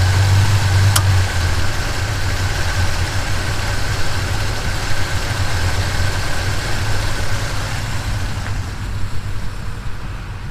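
A 1977 Chevy C10 engine with a lumpy cam idling, with a sharp click about a second in as the air-conditioning compressor clutch engages. Right after the click the deep low idle note weakens, as the compressor load drags the idle down by about 300 rpm. A faint steady whine runs underneath.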